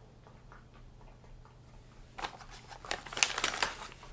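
Thin clear plastic lure bag crinkling as it is handled, starting about halfway in as a run of quick crackles after a quiet start.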